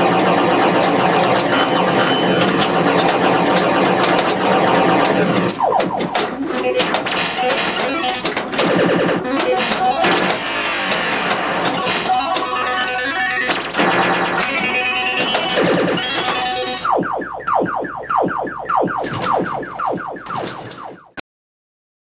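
Williams Space Shuttle pinball machine's electronic game music and synthesized sound effects, dense and layered, with occasional sharp knocks. Near the end a fast run of repeated tones fades away, and the sound cuts off suddenly about a second before the end.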